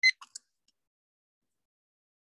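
A short high electronic beep right at the start, followed by a couple of faint clicks within the first half second; then the audio cuts to complete silence.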